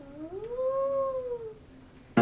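A person's voice giving one long ghostly 'oooo' wail that rises in pitch and then falls away, lasting about a second and a half.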